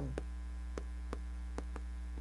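Chalk tapping and scraping on a chalkboard as words are written: a run of short, irregular clicks, several a second. A steady electrical mains hum runs under it.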